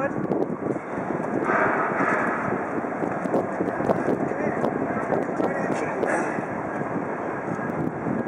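Freight train running past on the tracks, a steady rumble.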